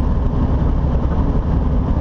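Steady low drone of a semi truck cruising at highway speed, heard inside the cab: engine and road noise.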